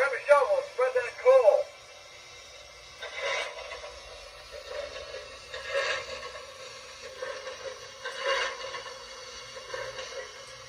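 MTH Protosound 3 sound system in a model steam locomotive playing its standing-engine sounds through the locomotive's small speaker: a brief snatch of recorded crew voice at the start, then short hissing bursts every two to three seconds.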